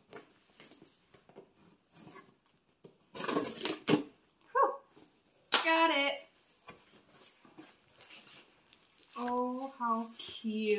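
A knife scraping and slicing through packing tape on a cardboard box, with small ticks and scrapes, then a loud rip of tape and cardboard a little over three seconds in. After that the box flaps rustle as they are pulled open.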